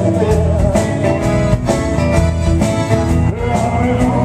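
Live band playing a rock-and-roll/blues song with a steady beat: a man singing over electric guitars, keyboards and drums.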